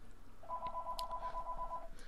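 A steady electronic beep of two pitches sounding together, telephone-like, lasting about a second and a half.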